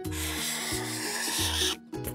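Felt-tip marker rubbing across a cardboard box lid in one continuous stroke as it draws an oval, growing louder and stopping suddenly just before the end. Light background music with a bass line plays underneath.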